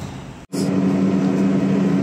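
Steady engine and road drone heard inside a moving vehicle's cabin, starting abruptly about half a second in after a brief stretch of quieter restaurant room noise.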